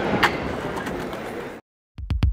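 Skateboard landing off a ledge with a single sharp clack about a quarter second in, over outdoor noise that fades out to silence near the end.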